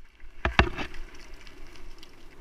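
Mountain bike riding fast down a dirt forest trail: after a brief drop at the start, the bike knocks and rattles sharply over bumps about half a second in, then a steady rushing noise of tyres on dirt.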